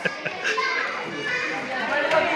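Children's voices calling out and chattering as they play.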